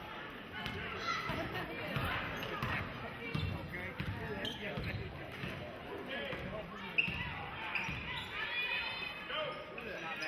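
A basketball being dribbled on a hardwood gym floor, repeated bounces echoing in a large gym, with a sharp knock about seven seconds in.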